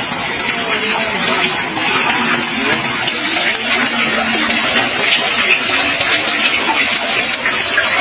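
Water pouring from bamboo pipes and splashing into a bamboo wishing well, a steady, even splashing.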